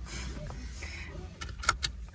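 Steady low rumble inside a car's cabin, with a few sharp clicks about one and a half seconds in.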